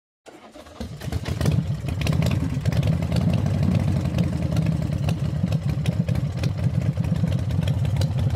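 An engine starts and builds up over the first second, then runs steadily with a fast, even pulse.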